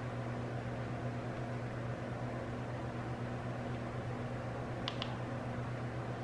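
Steady low hum over a background hiss, with two faint clicks about five seconds in, as of a button being pressed on a handheld gimbal.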